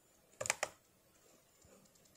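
Two quick computer mouse clicks close together, about half a second in.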